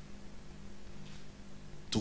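A pause in a man's speech through a handheld microphone, leaving a steady low hum and room tone from the PA. Speech resumes right at the end.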